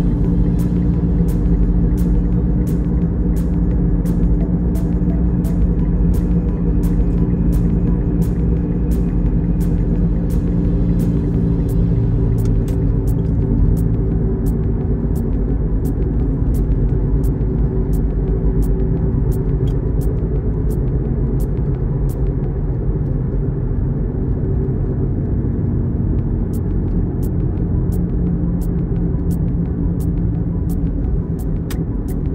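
Steady low rumble of engine and tyre noise inside a car's cabin while cruising on a highway, with a regular light ticking about one and a half times a second.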